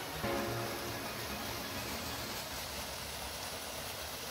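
Steady rush of falling water from a small waterfall, with a few soft music notes fading out in the first second or two.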